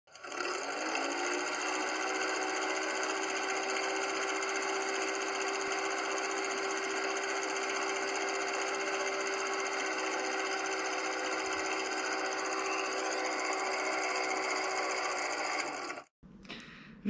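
Film projector running sound effect: a rapid, even mechanical clatter with a hum that rises in pitch as it spins up in the first second, then runs steadily and cuts off suddenly at the end.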